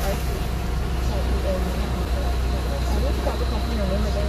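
Car idling, heard from inside the cabin as a steady low hum, with faint voices in the background.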